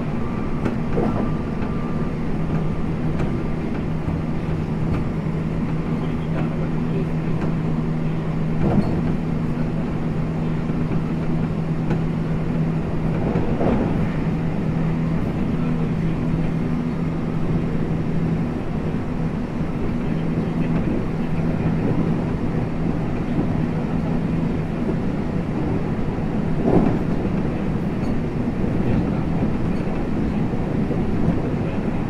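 JR West 225 series electric multiple unit running at a steady speed, heard from inside the car: a continuous rumble of wheels on rail with a low steady hum, and a few single knocks from the track.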